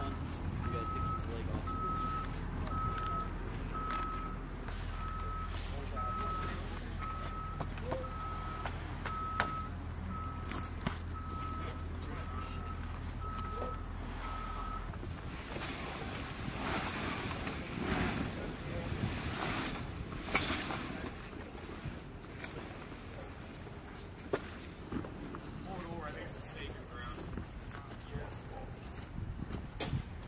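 A vehicle's reversing beeper sounding a steady single-pitch beep about one and a half times a second over a low engine drone. Beeper and engine stop together about halfway through, followed by irregular rustling and knocking handling noises.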